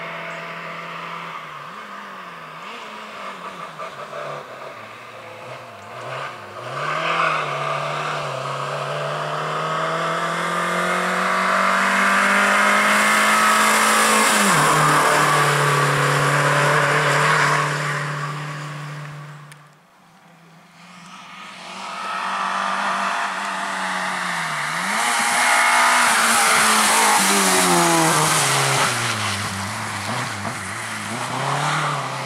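Suzuki Swift rally car engine working hard through tyre chicanes, its pitch climbing and dropping again and again with gear changes and throttle lifts. It is loudest as the car comes close, cuts off suddenly about two-thirds of the way through, then rises again as the car drives through once more.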